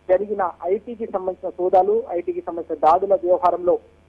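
Only speech: a man reporting in Telugu, in narrow, telephone-like sound.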